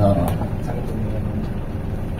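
Steady road and engine noise of a car driving, heard from inside the cabin.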